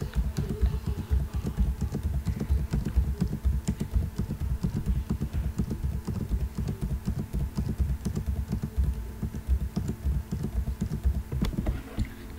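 Computer keyboard keys pressed rapidly and over and over, a dense run of clicks: the paste shortcut is being hit again and again to copy the same line of code down the page.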